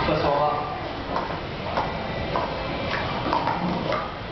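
Plastic sport-stacking cups clicking sharply as they are stacked up and down in a 3-3-3 run, a string of separate clacks about half a second apart, over voices talking in a large hall.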